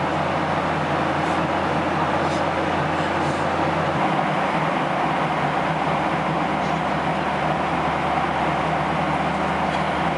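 Steady roar of a jet airliner's cabin in flight: engine and airflow noise with a low hum underneath. Part of that hum drops away about four seconds in.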